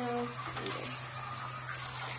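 A voice trails off at the start. Then comes a faint steady hum with a high hiss from the running micro slot car set, and a light click or two as a car is handled on the plastic track.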